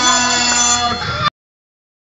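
A steady electronic buzzer tone made of several pitches at once, held over crowd voices. The audio cuts off abruptly a little over a second in.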